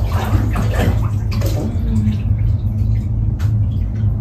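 Water sloshing in a birthing pool as a woman shifts position in it, over a steady low hum, with a low voice sound now and then.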